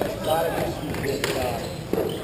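Players' voices calling out during hockey play, with two sharp knocks of sticks, about a second in and again near the end.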